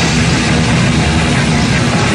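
Metallic hardcore punk from a 1985 band demo recording: loud, dense distorted guitar-driven music with no vocals in this stretch.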